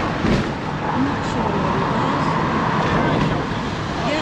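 Steady road and wind noise of a moving motorhome heard through an open side window, with a brief low thump about a third of a second in.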